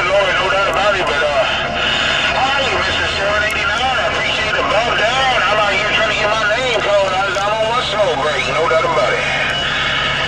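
Voices coming through a Superstar CB radio's speaker on channel 28, garbled past making out, over a steady low hum and noise.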